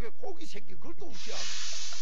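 A man's voice, faint in the first second, then a steady hiss lasting about a second.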